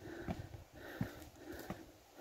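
Soft breathing puffs, with three faint sharp taps about two-thirds of a second apart, like the tips of a passing hiker's trekking poles striking granite.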